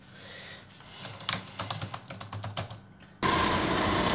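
Typing on a laptop keyboard: a quick, irregular run of keystrokes. Near the end it gives way abruptly to a much louder steady hiss.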